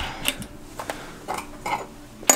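A few light metal clicks as a spacer is slid onto the splined freehub body of a bicycle rear hub.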